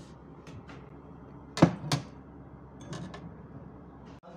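A ceramic mug set down on a wooden shelf: two sharp knocks about a second and a half in, followed by a few faint clicks.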